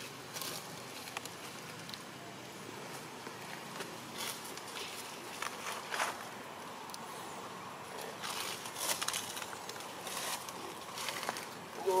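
Dry leaves rustling and crinkling in short, irregular bursts, more of them in the second half, over a faint steady outdoor hiss.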